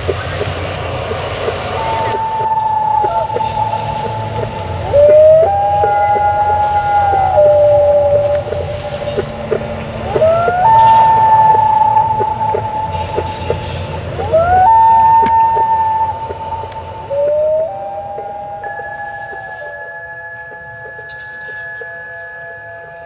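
Slow sustained musical notes, each sliding up into a held pitch for one to three seconds, over light scattered clicks. Near the end a bell-like ringing tone with several overtones takes over and slowly fades.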